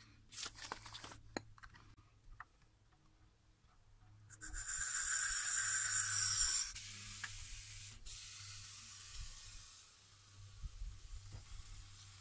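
Air hissing at a car tyre's valve stem as it is worked: a loud steady hiss lasting about two seconds, then a fainter hiss for a few seconds more, with small handling clicks at the start.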